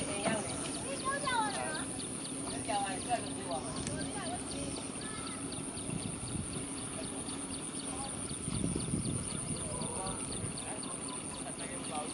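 Two water buffalo hauling a wooden plough through a flooded paddy: mud and water sloshing and splashing around their legs and the plough. Short voice calls come about a second in and again near three seconds.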